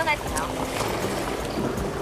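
Sea waves washing against shoreline rocks, with wind buffeting the microphone: a steady rushing noise.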